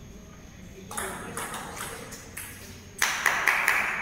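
Table tennis rally: the ball clicking off bats and table several times, starting about a second in. It is followed by a much louder burst of noise near the end.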